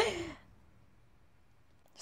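A woman's laugh trailing off into a breathy, falling sigh in the first half-second, then near silence.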